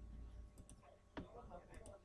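Computer mouse clicking while a document is scrolled: one sharp click about a second in, then a few fainter clicks, over near-silent room tone.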